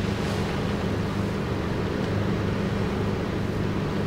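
Steady low engine hum and road noise heard from inside a vehicle's cab, even throughout with no change.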